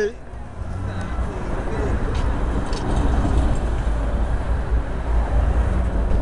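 Street traffic: a car passing close by, its engine and tyre noise building over the first few seconds and holding, over a low rumble of wind and handling on the microphone.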